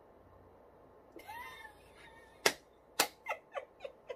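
Woman laughing, stifled behind her hand: a short high squeal that rises and falls about a second in, then two sharp cracks half a second apart, then a run of quick fading laugh bursts.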